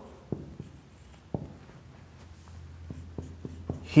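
Marker writing on a whiteboard: a scatter of short taps and strokes as letters are written, coming quicker near the end.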